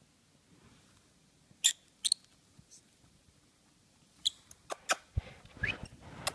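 Small pet parrot giving a few short, sharp high chirps and clicks, with a brief rising peep near the end. Fabric starts rustling near the end.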